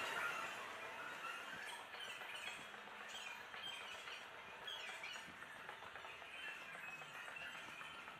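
Faint, repeated bird-like chirps from a subway station's acoustic guidance speaker: recorded birdsong played to lead visually impaired passengers toward stairs and exits.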